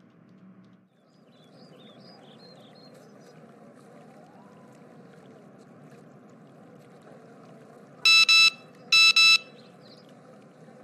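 Outdoor park ambience of steady running water, with a few faint bird chirps early on. Near the end a loud electronic alert tone sounds twice, about a second apart, each time as a quick double beep, like a phone's message notification.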